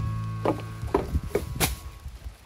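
Footsteps on wooden deck boards, four steps at a walking pace, while a guitar chord fades out in the first part.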